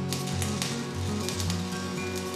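Background music with sustained tones and a pulsing bass line, with a faint irregular crackle of arc welding beneath it.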